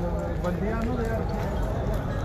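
A man's voice talking over street crowd noise and a steady low rumble.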